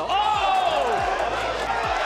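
A boxing commentator's drawn-out exclaimed "oh" near the start, over arena crowd noise.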